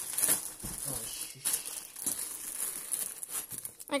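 Plastic wrapping crinkling and rustling as hands rummage in a cardboard box around a packed tent, in irregular crackles.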